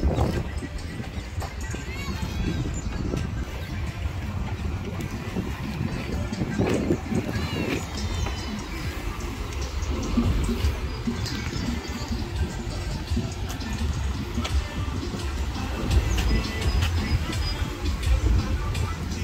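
Busy outdoor street ambience: background chatter of people and music playing, over a steady low rumble of wind on the microphone.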